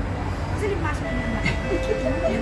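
Door-closing warning tone on an SMRT Kawasaki-Sifang C151B metro train: steady electronic tones start about a second in and shift to a lower pitch near the end, signalling that the doors are about to close. Under it is a steady low hum, with voices.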